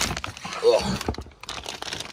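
Plastic packaging crinkling and rustling as hands rummage through a cardboard box to pull out a shifter, with a short vocal sound about half a second in.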